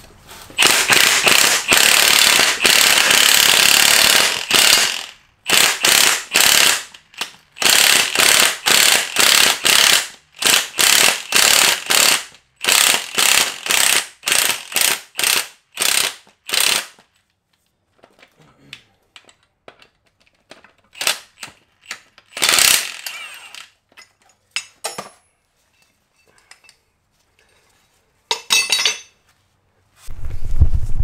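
Cordless electric ratchet turning the screw of a ball joint press to push a cap out of a front axle shaft U-joint. It runs for about four seconds, then in a string of short trigger bursts that grow shorter as the press works. After that come scattered light clicks and a few sharper metal knocks.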